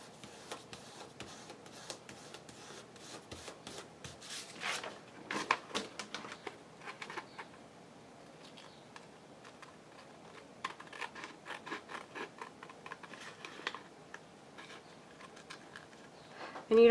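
Small scissors snipping around the edge of a piece of coffee-stained paper, in two runs of quick short cuts separated by a quieter pause, with light paper rustling.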